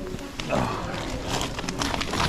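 Woven plastic shopping bag rustling and crinkling as items are lowered into it, starting about half a second in.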